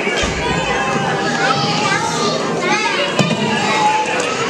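Many young children's voices chattering and calling out at once, overlapping with no clear words, with a single knock just after three seconds in.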